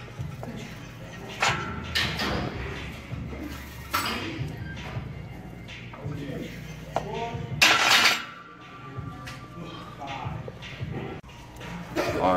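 Loaded barbell being overhead-pressed in a squat rack, its plates clinking and knocking, with a loud burst of noise about eight seconds in. Gym background music and voices run underneath.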